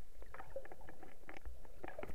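Muffled underwater sound over a coral reef: a low rumble of water with irregular sharp clicks and crackles, several a second.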